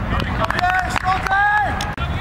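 A voice calling in two long, drawn-out held notes over a steady low background, with a few sharp clicks.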